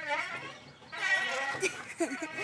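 A toddler laughing and squealing on a swing, in two short spells: one at the start and one about a second in.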